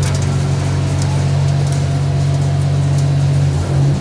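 Kitamura 50-taper horizontal machining center taking a heavy milling cut: a loud, steady low drone from the spindle and cutter in the work, dipping briefly near the end.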